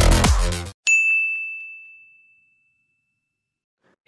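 Electronic dance music cuts off, then a single bright ding chime rings out and fades away over about two seconds.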